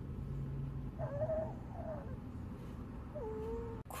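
A young child crying in short, wavering whimpers: one about a second in, a shorter one after it, and a lower, falling one near the end.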